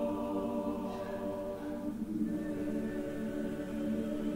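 Church choir singing long, held chords, the harmony changing about halfway through.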